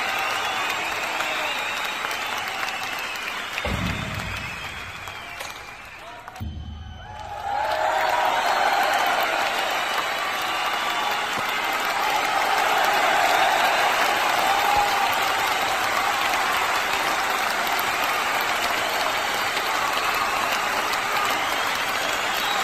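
An audience applauding, with crowd voices mixed in. The applause fades to a brief lull about six seconds in, with a couple of low thumps, then comes back at full strength and keeps going.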